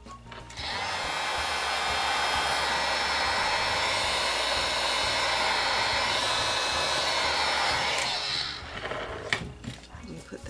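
Heat gun blowing steadily, switched on about half a second in and off after about eight seconds. A single sharp knock follows shortly after it stops.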